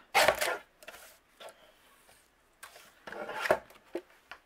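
A Tonic Studios paper trimmer cutting a strip off a cardstock panel: a short rasping slice as the blade runs along the rail right at the start, then a longer stretch of paper and card scraping and sliding as the panel is handled, about three seconds in.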